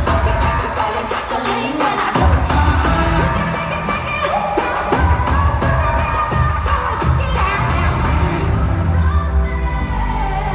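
Live pop music played loud through an arena sound system, with a heavy bass beat, drum hits and singing, heard from among the audience.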